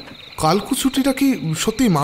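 Crickets chirring steadily as night-time background ambience. A voice starts speaking over it about half a second in.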